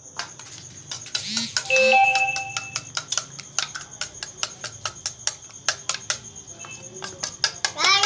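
Metal spoon beating eggs in a steel bowl, clinking against the bowl about four times a second. About two seconds in, a bell-like ringing tone sounds for about a second.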